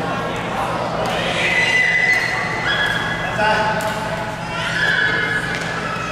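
Badminton shoes squeaking on the court floor: several sharp, high-pitched squeaks, each under a second long, as players push off and stop.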